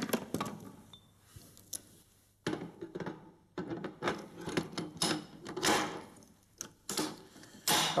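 Metal clicks and clacks of a PKM machine gun's quick-change barrel being handled: unlatched, lifted by its carrying handle and seated again. They come as separate sharp knocks, roughly one every second or so, with quiet gaps between.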